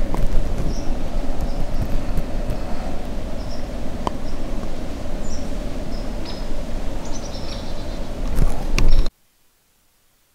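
Wind buffeting the microphone at an exposed hilltop overlook, a loud, uneven low rumble, with a few small birds chirping briefly above it. A few clicks come near the end, and the sound cuts off suddenly about nine seconds in.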